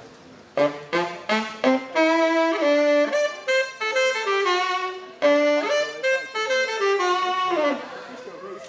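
Solo tenor saxophone demonstrating its voice: a few short rising notes, then two melodic phrases, the second ending in a falling run.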